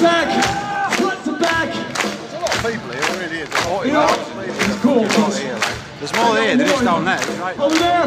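Live heavy metal band playing through a large open-air PA, with drum hits a few times a second under a lead vocal. The crowd shouts along.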